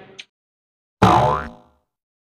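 A cartoon 'boing' transition sound effect about a second in: a short springy tone that rises in pitch and dies away within about half a second, with dead silence before and after it.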